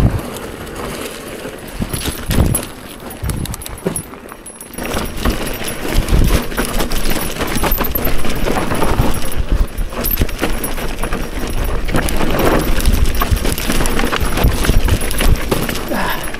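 Mountain bike descending rough dirt singletrack: tyres crunching over dirt and rocks and the bike rattling and knocking over bumps, with wind rushing on the microphone. It eases off for a few seconds about two seconds in, then picks up again and stays loud.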